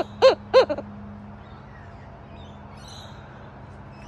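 Laughing kookaburra hooting: the last few notes of a run of short, evenly spaced hoots, each rising and falling in pitch, about three a second, ending less than a second in.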